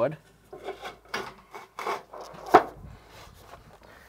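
Bent sheet-metal flashing being slid and pushed into an inside corner against plywood and foam, rubbing and scraping in short strokes, with one sharper clack about two and a half seconds in.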